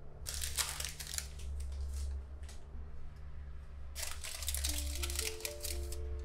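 Baking parchment crinkling and rustling in two bouts as the lined cake pan is handled, over background music.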